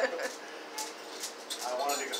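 A short laugh, then a quieter stretch with faint voices and a few light ticks. A man's voice comes in briefly near the end.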